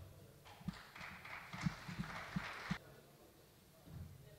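Faint footsteps on a hard floor: five or so dull thuds over about two seconds, with a soft rustle of clothing or movement, stopping a little before three seconds in.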